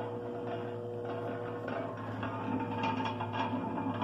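Treadmill DC motor running steadily, turning a meat mixer's paddle shaft through a belt and pulley, with a constant electric hum and whine.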